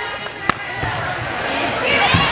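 A single sharp smack of a hand striking a volleyball on a serve, about half a second in, over the hubbub of a busy gym hall. Players' and spectators' voices calling rise near the end.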